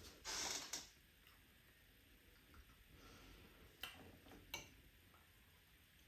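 Eating sounds from a spoonful of smoothie: a short slurp right at the start, then two small clicks about a second apart a few seconds in, over near-silent room tone.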